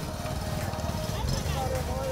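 Busy street ambience: indistinct voices of people close by over a steady low traffic rumble.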